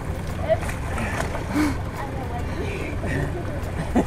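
A boat's engine running steadily at idle in neutral, a low hum, with faint voices and laughter over it.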